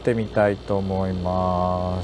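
A man's voice speaks briefly, then holds a steady, level hummed vowel for just over a second before it cuts off. Under it is the steady hiss of the space station cabin's ventilation.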